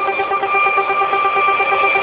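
Electronic dance music in a breakdown: a held synthesizer chord over a fast pulsing note, with no drum beat.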